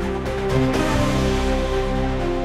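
Background music: sustained chords over a steady low bass note, with a brighter shimmering wash swelling in the middle.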